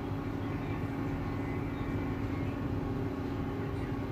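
A steady low machine hum with several even tones, unchanging throughout.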